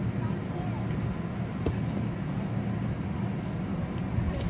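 Steady low drone of an electric air blower keeping an inflatable bounce house up, with one light knock about one and a half seconds in.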